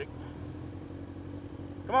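Motorcycle engine running steadily while riding at road speed, an even low drone heard from the rider's seat.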